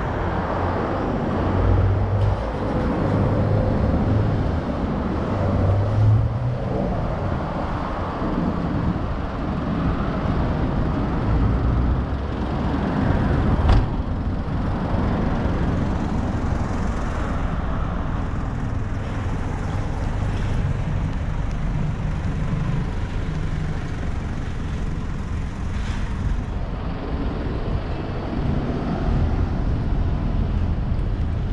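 City road traffic: cars, trucks and buses passing on a street in a steady rumble that swells as individual vehicles go by. One sharp click stands out about halfway through.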